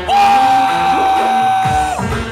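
Live band music in which one long, high, steady note is held for nearly two seconds, the rest of the band returning underneath as it ends.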